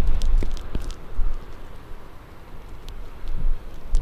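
Strong gusting wind buffeting the camera's microphone: a low rumble that eases in the middle and builds again near the end.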